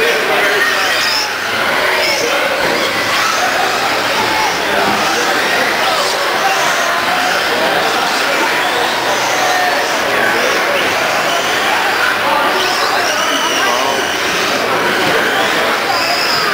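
Radio-controlled cars racing on an indoor track, their motors whining up and down in pitch, over a steady hubbub of voices in a large hall.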